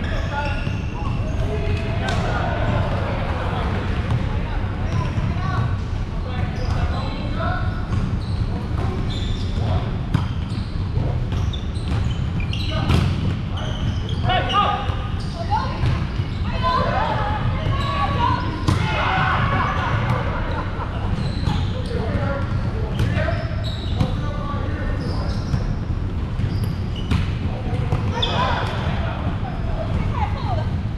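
Volleyballs being hit and bouncing: scattered sharp smacks through the stretch, over indistinct players' voices and calls and a steady low rumble.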